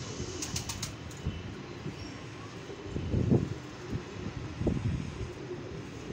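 Pigeons cooing, with louder low coos about three and four and a half seconds in, and a few quick clicks about half a second in.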